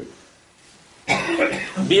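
About a second of quiet room tone, then a man coughs and goes straight back into speaking near the end.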